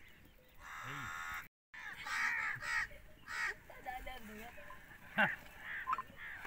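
Crows cawing, several harsh calls in a row, with a short sharp knock about five seconds in.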